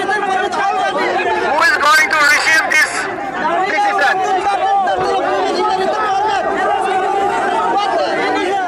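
A crowd of protesters talking and shouting over one another, a dense mass of voices with no single clear speaker.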